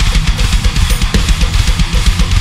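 Drum kit played fast: rapid bass-drum strokes under a steady wash of cymbals. The pattern is three-sixteenth-note groupings played in the value of triplets, a metric modulation example.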